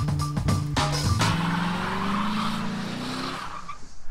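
Music with a heavy beat, cut off about a second in by a car engine revving with rising pitch over the hiss of spinning, squealing tires in a burnout. It fades out shortly before the end.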